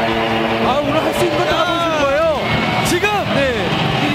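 A held musical chord that ends about a second in, then a voice calling out excitedly in long cries that sweep up and fall in pitch, with a couple of sharp clicks.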